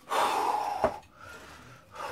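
A man's hard breathing, out of breath mid-workout: one loud breath of just under a second as he pulls through a body row on suspension straps, with a sharp click near its end, then quieter breathing.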